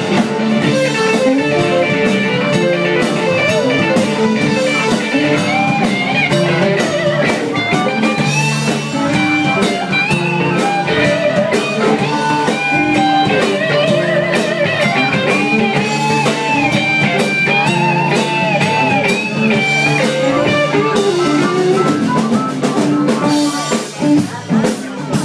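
Live blues band playing an instrumental stretch without vocals: electric guitar, bass and drums, with a high lead line of bent, held notes through the middle.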